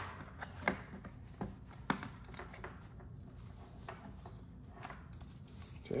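Hands handling a cardboard box and a cloth mouse bag: a few light taps and clicks in the first two seconds, then faint rustling.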